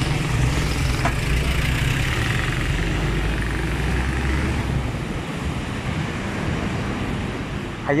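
A small box truck's engine passing close by, a low drone that fades away after about five seconds, leaving steady street traffic noise.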